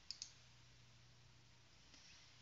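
Near silence with two faint computer keyboard keystrokes in quick succession just after the start, over a faint steady low hum.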